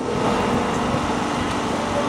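Steady city street background noise: an even, unbroken hum and rumble with no distinct events.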